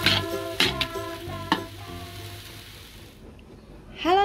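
Julienned chayote and carrot sizzling as they are stir-fried in a wok, with a steady hiss that stops a little after three seconds in. Light background music with a beat plays over it and fades out about two seconds in.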